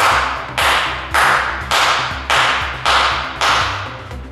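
A man clapping his hands in a steady beat: seven sharp claps, a little over half a second apart, each dying away with a reverberant tail. The claps are the beat for an LED lamp's sound-to-light mode.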